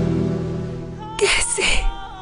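A woman's short, breathy sob, two quick gasps a little after a second in, over soft dramatic background music that fades down beforehand.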